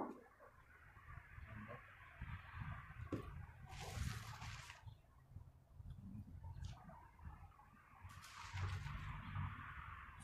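Faint outdoor background: an uneven low rumble with two brief rushes of hiss, about four seconds in and again near the end.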